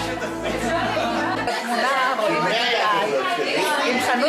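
Several people talking over one another in a large hall. A low, steady music bed is underneath at first and cuts off suddenly about a second and a half in, leaving only the chatter.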